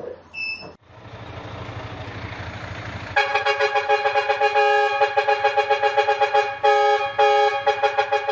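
A vehicle horn sounding in long held blasts broken by a few brief gaps, coming in about three seconds in after a stretch of steady rushing street noise.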